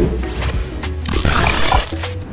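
Intro jingle for a radio show: music with a steady deep bass, and a swell of rushing noise through the middle.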